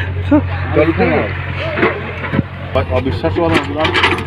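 People talking over the steady low drone of a Hyundai hydraulic excavator's diesel engine running.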